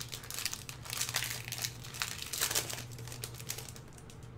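Plastic wrapper of a Magic: The Gathering Onslaught booster pack crinkling as it is torn open and pulled apart. It is a run of crackles lasting about three seconds, loudest around the middle and again near the end.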